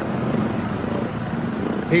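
Speedway motorcycle engines running steadily, with no clear revs or gear changes.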